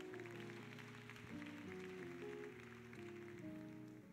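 Quiet church keyboard music: soft held chords with the notes moving to new pitches about every half second.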